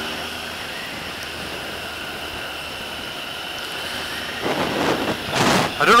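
Motorcycle cruising at a steady speed, engine and wind noise heard as one steady rush. A louder gust of rushing noise builds near the end.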